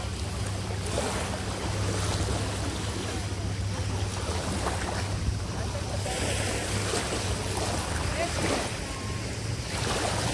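Small waves washing over a shallow pebble shoreline, with wind on the microphone and a steady low hum underneath.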